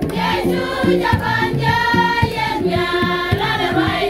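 Women's choir singing a gospel song together over an accompaniment of low stepping bass notes and a steady beat.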